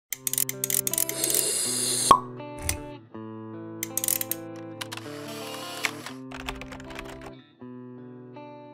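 Logo-intro music of held chords, overlaid with quick clicking and popping sound effects. A rising whoosh ends in a sharp hit about two seconds in, and low thuds follow later.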